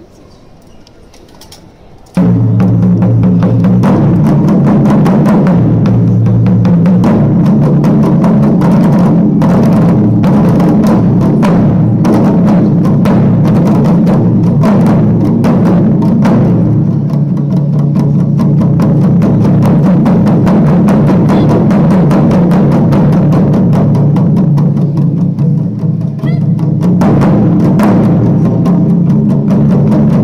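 An ensemble of Japanese taiko drums beaten with wooden sticks in a fast, dense rhythm, very loud. It starts suddenly about two seconds in, after a low murmur. The strokes thin to a darker, lower passage in the second half, then the full sharp beating returns near the end.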